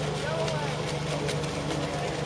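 Radio-controlled electric model racing boats running on a pond: a steady motor hum, joined by a steadier, higher whine near the end. Voices chat briefly in the background.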